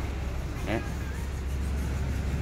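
A steady low rumble of a vehicle engine, with a faint voice briefly in the background.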